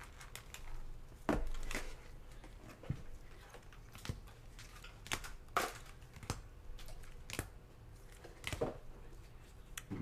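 Gloved hands handling trading cards in hard clear plastic holders: a string of irregular sharp plastic clicks and clacks as holders are picked up, set down and swapped, over soft glove rustling.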